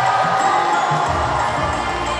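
A vocal group of many voices singing together over a musical backing with a low, regular beat, while an audience cheers.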